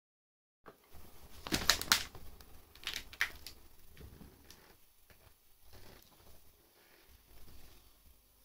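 Faint cassette tape hiss from a transfer made without Dolby noise reduction, starting about half a second in, with a few sharp clicks and rustles in the first few seconds: the tape's lead-in before the music.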